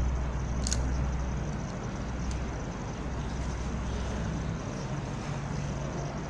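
Steady background noise: a low rumble with a hiss over it, strongest for the first couple of seconds and then easing, and two faint clicks about one and two seconds in.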